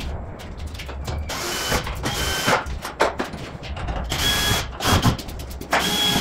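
A power tool run in several short bursts of about half a second each, each with a steady high whine, and sharp clicks and clatter from tools and parts in between.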